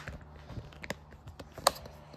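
Small clicks and knocks from a phone camera being fitted onto a tripod mount, with one sharp click near the end.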